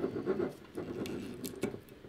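Scissors scraping and cutting at the seal over a whiskey bottle's cork: a run of irregular small scratches and clicks.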